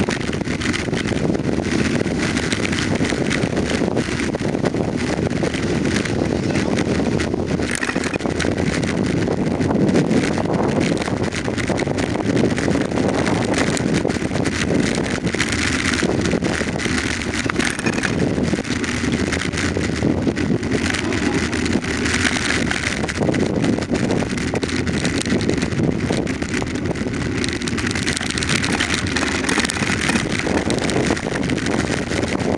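Steady rumble of a bicycle rolling slowly over rough, patched asphalt, with wind on the microphone and many small rattles and bumps.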